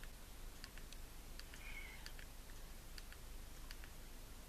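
Faint clicks of the Firefly 5S action camera's front button being pressed over and over to scroll through its menu, about a dozen at uneven spacing.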